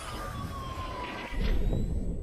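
Electronic intro sound effects for an animated logo: a tone sliding slowly downward over a noisy rush, then a deep low hit about a second and a half in, the loudest moment, starting to fade away.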